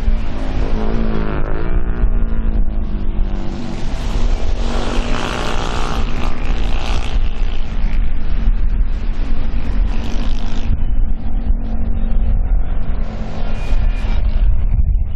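Small engines of racing katinting boats running hard, their pitch rising and falling as the boats pass, with a steadier engine tone through the second half. A heavy low rumble of wind on the microphone lies under it all.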